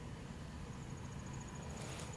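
Crickets chirping faintly in a fast, even, high-pitched pulsing trill, over a low background rumble.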